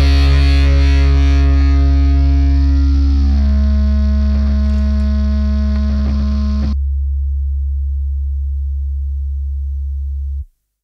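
The song's last distorted electric guitar chord ringing out and slowly fading. About seven seconds in, the upper notes cut off, leaving only a low hum.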